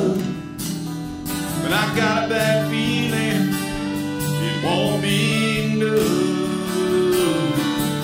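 Country song played live on strummed acoustic guitars with a fiddle, with notes that slide up into pitch.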